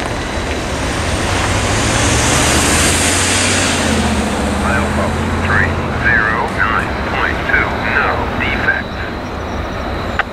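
A road vehicle driving past: engine hum and tyre noise swell over the first few seconds and fade by about six seconds in. A quick run of short, high-pitched chirps follows near the end.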